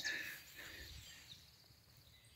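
Near silence: a faint outdoor background for about the first second, then the sound cuts out to dead silence.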